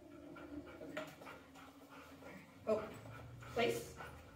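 A goldendoodle whining in one long, low, steady note for the first couple of seconds, then two short, loud voice bursts near the end.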